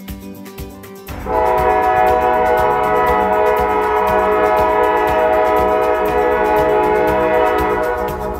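Norfolk Southern freight locomotive's air horn sounding for a grade crossing: one long, steady blast of several notes at once, starting about a second in and easing off near the end, over the low rumble of the approaching train.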